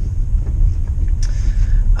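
Steady low rumble of road noise heard inside the cabin of a moving Mitsubishi Outlander PHEV, with its petrol engine off, running on electric power.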